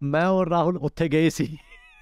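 A man's voice at a high, sliding pitch, as if mimicking, tailing off near the end in a faint, falling whine.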